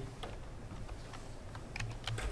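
A few separate computer keyboard keystrokes, one shortly after the start and a couple near the end, as a number is typed into a spreadsheet cell.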